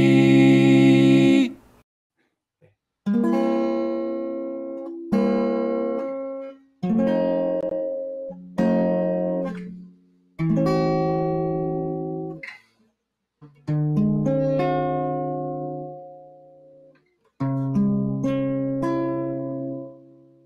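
A held four-voice a cappella barbershop chord that cuts off about a second and a half in. Then a Kite Guitar, a microtonally fretted guitar, strums about seven slow chords, each left to ring and fade, in the blended just-intonation barbershop harmony the instrument is built for.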